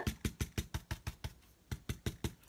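Foam pouncer dabbed rapidly against a paper napkin glued with Mod Podge onto a clipboard, pressing it into the glue. It makes a quick run of sharp taps, about seven a second, with a short pause just past halfway before the tapping resumes.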